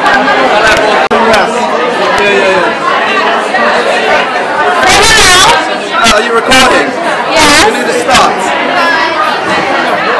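Crowd chatter: many people talking over one another in a busy indoor room, with voices close to the microphone. A louder burst of voice comes about halfway through.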